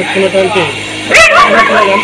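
A man talking, cut across about a second in by a short, sharp high call that rises and then falls in pitch.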